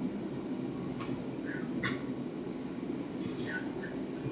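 Steady low rumble of an NJ Transit train running along the rails, heard from inside the car, with a few short high chirps about halfway through and again near the end.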